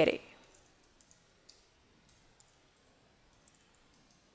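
Faint, scattered keystrokes on a computer keyboard: a handful of soft, separate clicks spread over a few seconds.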